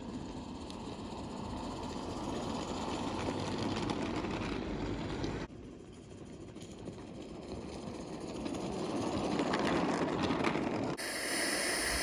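A 16 mm scale Accucraft Sabrina live steam locomotive running with steady steam hiss as it pushes its plough along the snow-covered track. The sound grows louder as the engine comes nearer, once in each of two shots.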